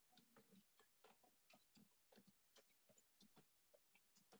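Near silence with faint, irregular clicks, several a second.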